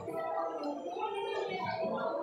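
Indistinct background chatter of many overlapping voices in a fast-food dining area, steady throughout with no single loud event.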